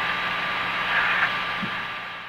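Steady hiss and electrical hum of the Apollo 8 crew's onboard voice recording, in a pause between the astronauts' remarks, easing down a little near the end.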